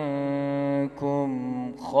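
Adult male voice reciting the Quran in a melodic, drawn-out chant, holding long wavering notes. The voice breaks off briefly about a second in and again just before the end.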